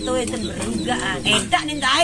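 Speech: people talking in conversation.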